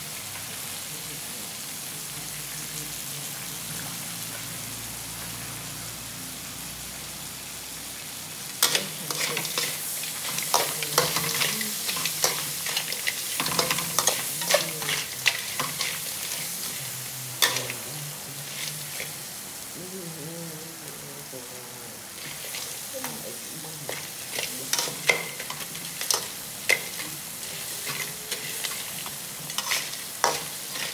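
Small whole crabs frying in hot oil in a pan with a steady sizzle. From about eight seconds in, a steel spatula stirs and turns them, adding repeated sharp scrapes and clacks of metal against the pan and shells over the frying.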